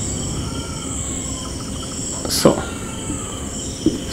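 A steady high-pitched background drone of several unchanging whining tones over a low hum, with one brief sound about two and a half seconds in.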